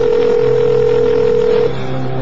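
A telephone ringing tone heard over the line as a call is placed: one steady, even tone that stops a little before the end.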